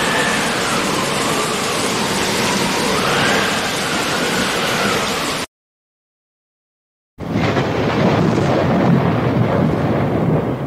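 JCB 3DX backhoe loader's diesel engine running as it drives, heard as a loud, rough rumble with an engine note that slowly rises and falls. The sound cuts out completely for about a second and a half in the middle, then the engine noise resumes.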